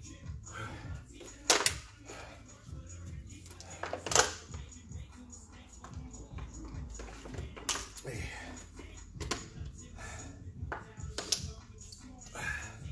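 A handful of sharp knocks and clicks, the loudest a close pair about a second and a half in and another about four seconds in. They come over a steady low hum with faint voices or music.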